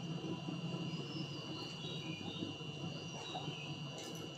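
Faint, steady, high-pitched insect chirring.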